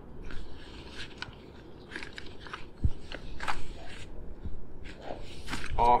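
Nylon ball bag of a portable tennis ball cart being handled and pulled off its metal frame: fabric rustling with small crackly clicks, and a dull thump about three seconds in.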